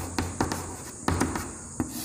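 Chalk writing on a chalkboard: quick taps and short scratchy strokes, a few to a second, as the letters are formed.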